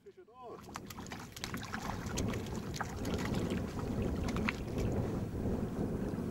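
Wind buffeting the microphone over small waves lapping at a lake bank, a steady rough rushing.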